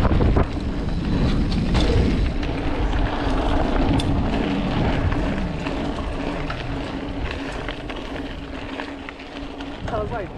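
Wind buffeting the microphone and knobby tyres rolling over a dirt trail as a mountain bike descends, with a faint steady hum joining a few seconds in; the noise eases off toward the end as the bike slows.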